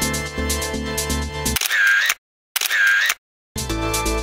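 Electronic background music with a steady beat, cut off about one and a half seconds in by two identical short sound effects, each with a pitch that rises and falls. They are separated by dead silence, and the music comes back near the end.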